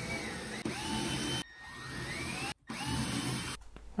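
Milwaukee cordless drill boring 1/4-inch holes into ceiling drywall in three short runs, its motor whine climbing in pitch as it speeds up.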